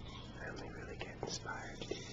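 A man whispering softly, with a few sharp clicks, over a steady low hum.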